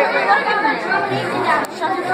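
Several people chattering at once, their voices overlapping.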